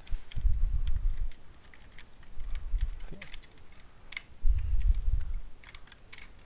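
Transformers Studio Series 86 Grimlock plastic figure being handled and transformed: a scatter of sharp plastic clicks and clacks as its parts are moved, with a low rumble of handling twice.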